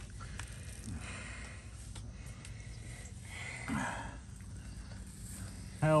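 A horse blowing out a breath through its nostrils about three and a half seconds in, over a faint steady outdoor background.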